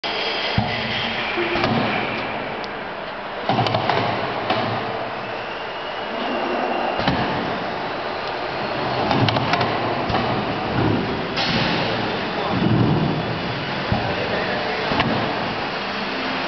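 Automatic rotary screen printing press running: a continuous mechanical din with scattered clicks and knocks from its moving heads and pallets.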